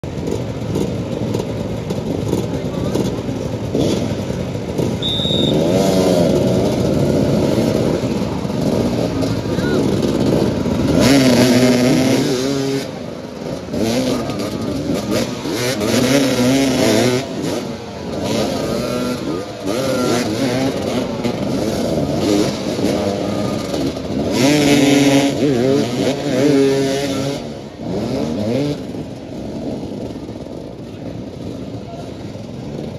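Several motoball motorcycles revving and accelerating close together, their engine notes rising and falling over one another, loudest about eleven seconds in and again near twenty-five seconds.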